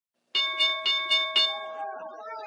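A bell struck five times in quick succession, about four strikes a second, its ring fading away afterwards.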